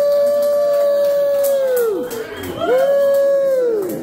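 Saxophone playing a long held note that scoops up into pitch and falls away at its end, then a second, shorter held note with the same fall-off near the end.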